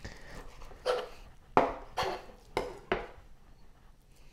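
Kitchen knife trimming raw chicken on a plastic cutting board: about five sharp knocks of the blade meeting the board, less than a second apart.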